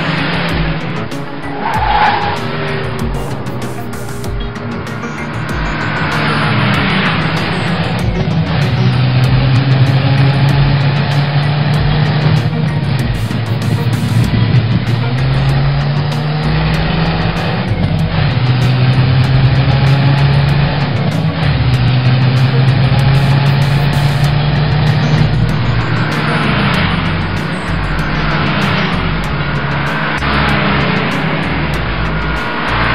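Race car engine sound effects running continuously under background music, the engine drone stepping up and down in pitch, with whooshing pass-bys just after the start and again near the end.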